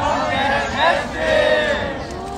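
A group of people shouting and cheering together, several voices at once, loudest in the middle and tailing off near the end.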